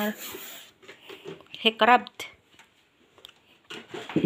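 A short spoken word or exclamation a little before halfway, with a few faint clicks and taps around it; otherwise a quiet room.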